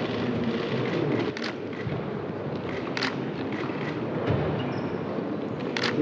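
Background noise of a large hall with people shuffling and murmuring, and a few sharp clicks about a second and a half, three seconds and six seconds in.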